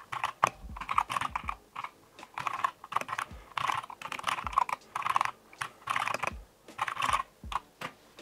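Typing on a computer keyboard: quick runs of keystrokes with short pauses between them.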